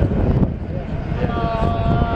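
Strong gusty wind buffeting the microphone: a loud, uneven low rumble.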